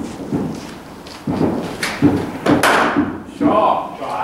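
Cricket bat striking the ball on a drive, with one sharp crack about two and a half seconds in that rings off around the netted hall. Lesser thuds come before it, and a short voice follows near the end.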